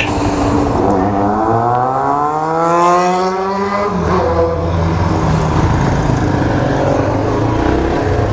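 Motorcycle engine accelerating hard, its pitch rising steadily for about four seconds, then dropping suddenly at a gear change and running on steadily, with road and traffic noise.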